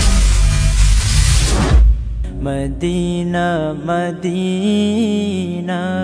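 Channel intro music: a loud rumbling whoosh for about two seconds, then a drawn-out sung vocal line over a low steady drone.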